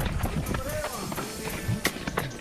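Running footsteps on a dry dirt forest trail, shoes striking and scuffing on earth and stones in an uneven rhythm, with music playing underneath.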